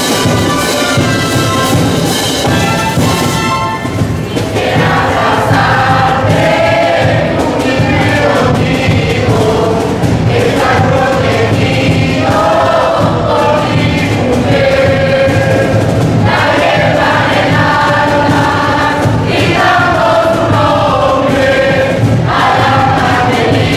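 Many voices singing a religious song together with instrumental accompaniment. For the first few seconds the instruments hold chords, and the singing comes in about four seconds in, continuing in phrases of a few seconds each.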